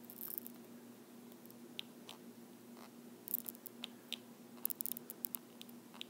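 Faint taps and short scratches of a stylus writing on a tablet, coming thickest in the second half, over a steady low hum.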